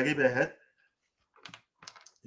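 A man talking, his speech stopping about half a second in; after a short pause come two faint, short clicks, the second just before the end.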